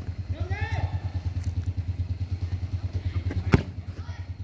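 A football kicked hard once, a sharp thud about three and a half seconds in. Under it runs a steady low pulsing hum, with a player's shout near the start.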